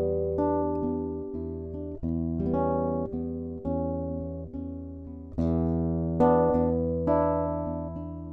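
Solo acoustic guitar playing a slow introduction: a series of strummed and plucked chords, each struck and left to ring and fade before the next.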